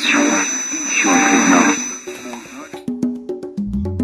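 Radio jingle cutting in abruptly after a brief silence: a loud, noisy opening with a voice mixed in for the first few seconds, then a run of quick plucked notes and a low bass note leading into music.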